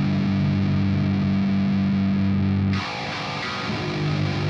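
Slam death metal music: heavily distorted electric guitar holding a heavy low riff. A little under three seconds in, the low end drops out briefly, leaving a thinner, higher-pitched guitar texture.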